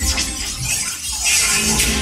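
Electroacoustic music from the piece's digital audio part: hissing noise bursts over a low rumble, a short one at the start and a longer one in the second half.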